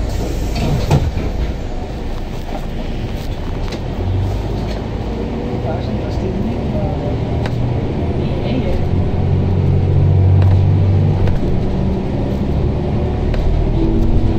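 City bus heard from inside, its engine running under load as it drives along. The engine tone builds from about four seconds in to its loudest around ten seconds, then falls away, with light rattles and clicks from the cabin.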